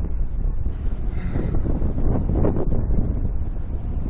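Wind buffeting the microphone of a camera mounted on a Slingshot reverse-bungee ride capsule swinging high in the air: a steady low rumble.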